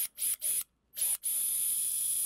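Powered surgical drill driving a 4.5 mm guide pin into bone at the popliteus insertion on the lateral femur. It gives several short trigger bursts, stops briefly, then runs as a steady high-pitched whine from a little after one second in.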